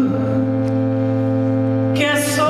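Live band holding one steady, sustained chord over a bass note, with no singing over it.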